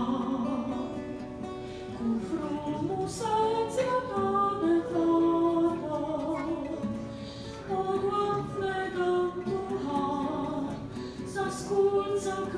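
A woman singing a hymn solo into a microphone, with guitars and other plucked strings accompanying her; the melody moves in held notes.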